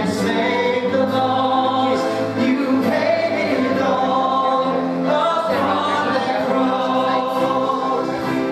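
A church praise team of women's and men's voices singing a contemporary worship song together over instrumental accompaniment, the phrase changing about two thirds of the way through.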